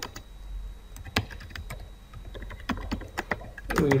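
Typing on a computer keyboard: a run of irregular key clicks.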